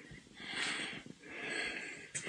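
A man breathing close to a handheld microphone: two soft breaths, each about half a second long.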